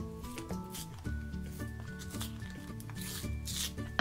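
Rustling and rubbing of a Pez candy pack's paper wrapper as it is peeled open by hand, with a longer rustle near the end, over background music.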